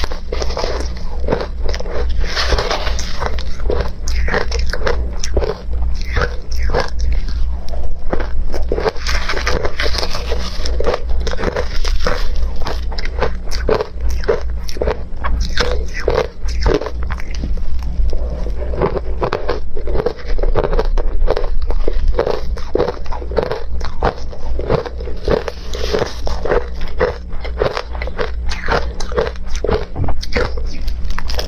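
Close-miked crunching and chewing of ice topped with milk powder and matcha, rapid crisp crackling bites one after another, over a steady low hum.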